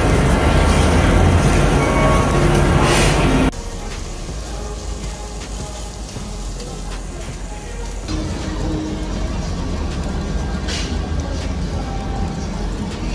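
Meat sizzling on a tabletop Korean barbecue grill, a loud steady hiss that drops off suddenly about three and a half seconds in, leaving a much quieter sizzle under background music.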